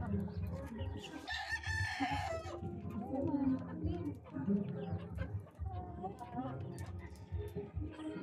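A rooster crows once, a single call of just over a second starting about a second in. Chickens cluck at lower level around it.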